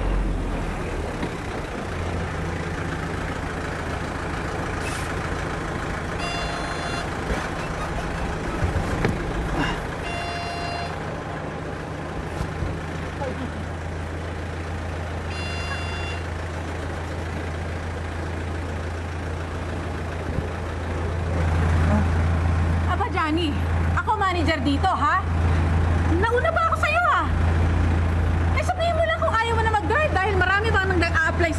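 Minibus engine running with a steady low hum that grows louder about two-thirds of the way in, with three short high-pitched beeps in the first half. Voices talking over the engine near the end.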